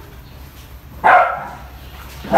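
A dog barks once, about a second in, a single loud bark that starts suddenly and fades quickly.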